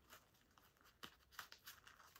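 Near silence, with a few faint clicks and rustles in the second half from a doll's miniature umbrella being handled as its ribs are pushed back into their sockets.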